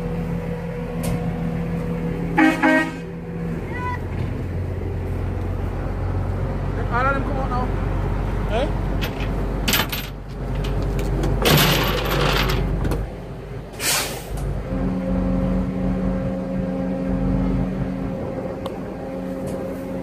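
Vehicle engine running steadily, with a short car horn toot about two and a half seconds in, amid people talking.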